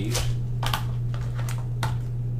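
Small LED stair lights and their cables being handled, giving about five short clicks and rustles over a steady low hum.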